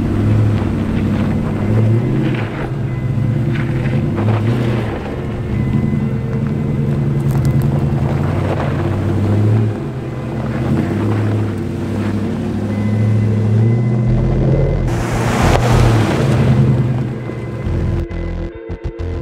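Background music with sustained low notes, mixed with a vehicle engine running. A rush of noise rises and falls about fifteen seconds in.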